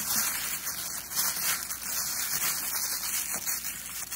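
Thin plastic shopping bag crinkling and rustling unevenly as strips of it are crammed by hand into a loom-knit yarn ball as stuffing.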